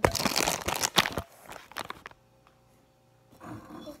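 Close-up crinkling and rubbing handling noise, loud for about the first second, then mostly quiet with a few faint clicks and a soft rustle near the end.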